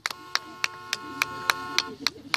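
Hand drum struck in a steady, even beat, about three and a half strokes a second, with a faint steady tone behind it.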